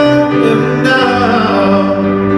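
Live acoustic performance: a male voice singing with held notes over acoustic guitar and cello.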